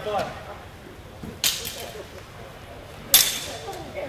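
Steel longswords clashing twice, about a second and a half apart: sharp metallic strikes, the second louder and ringing briefly.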